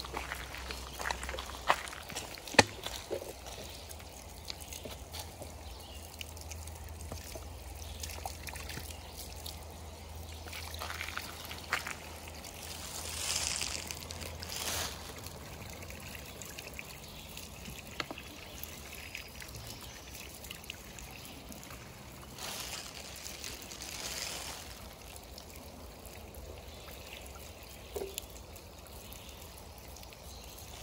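Spring water running from a pipe outlet and splashing onto wet ground, filling a plastic bottle held under the stream, with louder swells of pouring now and then. A few sharp clicks of footsteps come in the first seconds.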